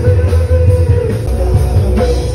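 Loud live rock music from a band on a PA system: electric guitar and heavy bass, with a man singing into a microphone.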